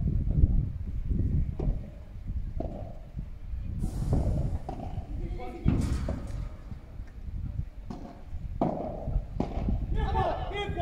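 Padel rally: the ball is struck back and forth by padel rackets and bounces on the court, a series of sharp, irregular knocks.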